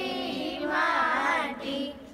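A group of schoolgirls' voices, loudest in one wavering phrase about a second in, dropping away near the end.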